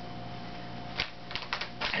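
Steady electrical room hum, then from about a second in a quick run of sharp clicks.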